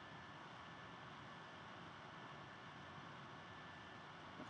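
Near silence: room tone, a faint steady hiss.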